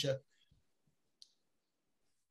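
A man's voice trails off at the very start, then near silence broken once by a single faint, short click a little past one second in.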